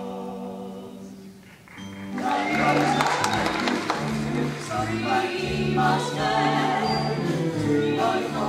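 Young choir of stage-musical singers: a held chord fades out, and about two seconds in a louder sung passage starts, with moving voices over steady low notes.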